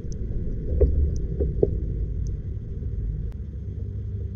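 Underwater recording: a steady low, muffled water rumble, with three soft knocks between about one and one and a half seconds in.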